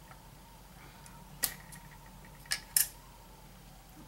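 A few short, sharp clicks as a knife cuts through hollow filled chocolate pieces on a stone board: one about a second and a half in, then three close together a second later, the last of them the loudest.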